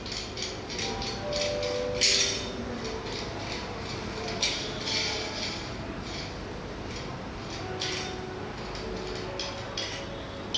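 Light metallic clicks and scrapes from a round-knob (cylindrical) door lock being handled as its cover cap is worked loose, with the sharpest clink about two seconds in.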